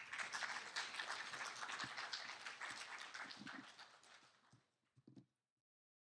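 Audience applauding at the end of a talk, a dense patter of claps that fades away over about four seconds. The sound then cuts off suddenly.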